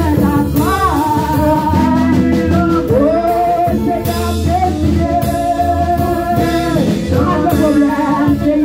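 A woman singing a gospel song into a microphone in long, wavering held notes, over instrumental accompaniment with a steady bass line and a beat.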